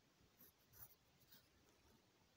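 Near silence: room tone with a few faint, brief scratchy rustles, the clearest a little under a second in.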